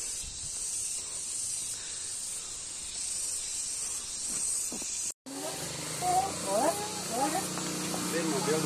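A steady, high insect drone, with no words, for about five seconds; it cuts off abruptly, and then children's voices talk.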